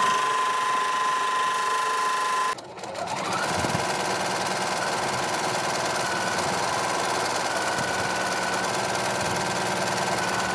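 Ricoma multi-needle embroidery machine stitching a patch at a steady speed. About two and a half seconds in, the sound breaks off briefly; the machine then speeds up with a rising whine and settles into steady, even stitching.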